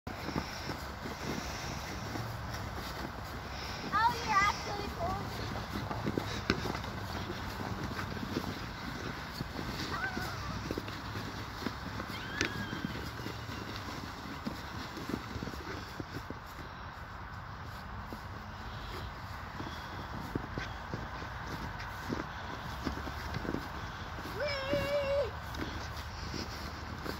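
Footsteps crunching through snow and a sled scraping along behind, a steady crunching and sliding with many small clicks. A child's short high voice sounds break in a few times: rising squeals about four seconds in, brief calls around ten and twelve seconds, and a wavering held note near the end.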